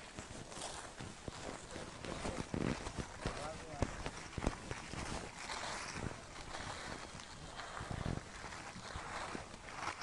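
A hand in a plastic bag working loose, crumbly soil and compost: scattered small crunches and crackles of soil and plastic. Faint voices murmur in the background.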